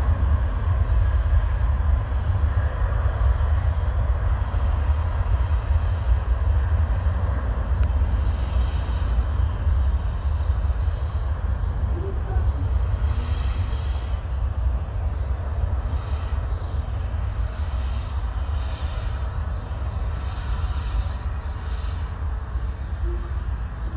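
Airbus A380's four jet engines at takeoff power, heard from a distance: a deep, steady rumble with a broad rushing noise on top, slowly growing quieter as the aircraft moves away.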